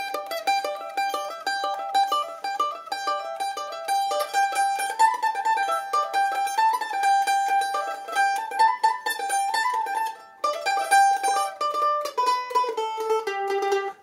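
Mandolin flatpicked in a fast run of quickly repeated notes, working through a pentatonic scale pattern. The line climbs around the middle, breaks off briefly about ten seconds in, then steps down to lower notes near the end.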